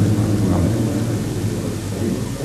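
Steady low hum with a background hiss, with no voice over it.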